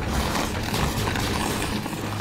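Liquid latex pouring from a hose into a plaster mold: a steady, grainy rush of flowing liquid with a low steady hum beneath.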